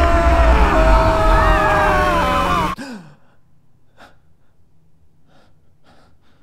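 A loud rushing, rumbling sound effect with slowly sliding tones over a deep rumble, which cuts off abruptly about three seconds in. After that, a few faint short breaths or gasps.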